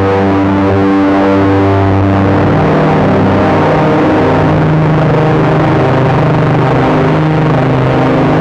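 Dark drone music played live on synthesizers (Novation Peak, Soma Pipe, Soma Cosmos): a loud, distorted sustained chord over a noisy haze. About two and a half seconds in, its bass note shifts upward.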